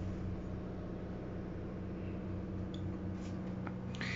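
Steady low hum of a motor coach's onboard generator running, heard inside the coach, with a few faint small clicks late on.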